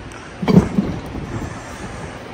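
A sharp thump about half a second in, then fainter low knocks and rubbing, as a knobby utility-vehicle tire is worked by hand onto a steel wheel rim on a tire changer.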